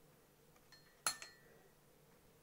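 A light tick, then about a second in a single sharp clink of hard objects with a brief ringing tail, like a knock on glass or crockery.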